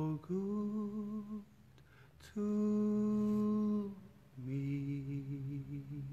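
A man humming a slow worship-song tune in three long held notes, the last one wavering slightly.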